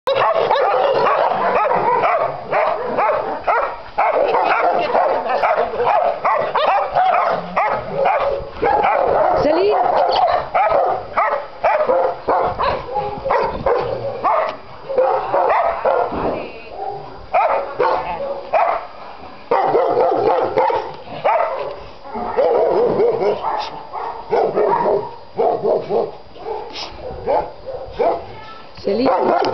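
Several dogs barking, their barks overlapping almost without a break, with only short lulls.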